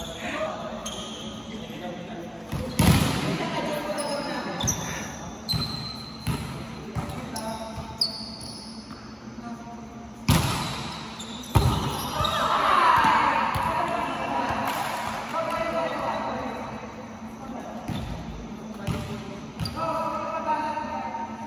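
A volleyball being struck and bouncing on a gym floor, several sharp hits ringing in the hall, the loudest about three seconds in and twice around ten to eleven seconds in. Players' voices and calls come between the hits, with a drawn-out shout near the middle.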